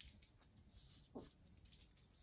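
Near silence with faint rustling, broken about a second in by one short muffled squeak that falls in pitch, from a young girl holding her breath with her hand over her mouth.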